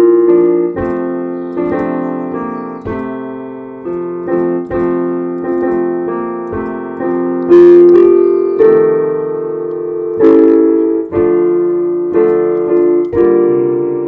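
Piano played slowly and plainly, chords struck about once a second and each left to ring and fade before the next. Amateur playing, which the player himself calls banana-fingered.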